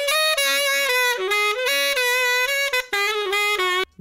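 Recorded saxophone line played back through Soundtoys Decapitator saturation, which adds a slight distortion to the upper frequencies. A phrase of changing notes that breaks off just before the end.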